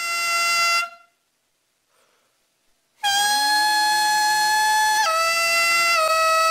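Hichiriki, the bamboo double-reed pipe of gagaku, playing a loud held nasal note that starts with a slight bend about three seconds in, then stepping down to a lower held note about two seconds later. Before it, a short held ryūteki (gagaku transverse flute) note ends within the first second, followed by a pause.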